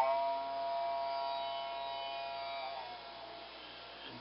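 Background sitar music: one sustained note that slowly fades away, with a slight bend in pitch near the end.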